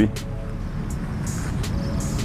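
Low, steady outdoor background rumble with a few faint clicks, in a pause between spoken sentences.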